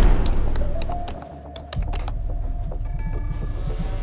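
Computer keyboard being typed on, irregular key clicks over a low steady hum.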